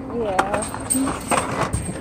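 A short laugh at the start, then Hot Wheels blister-pack cards clicking and rustling, plastic and cardboard knocking together, as they are handled and flipped through.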